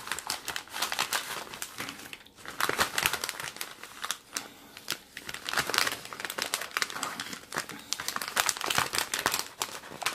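Clear plastic pocket-letter sleeve crinkling and rustling in irregular bursts as fingers work an item out of its pocket, with a couple of short lulls.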